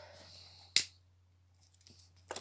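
A faint, soft hiss of breath, then a single sharp click a little under a second in, followed by a few tiny ticks near the end.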